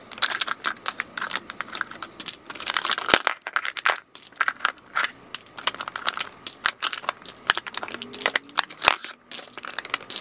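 Lipstick tubes, metal and plastic cases, being taken out of a clear acrylic organizer: a rapid, irregular run of small clicks and knocks as the cases tap against each other and the acrylic compartments.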